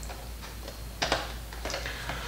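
A few light clicks and taps as a plastic portable DVD player and its plugged-in cables are handled. The sharpest click comes about a second in, with a couple of fainter ones after it.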